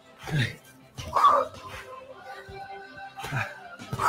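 Background workout music with three short, sharp vocal bursts over it, the loudest about a second in.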